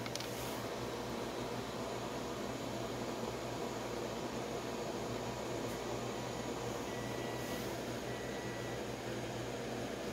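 Steady background hiss and hum of room noise, like a running fan, with no distinct event standing out.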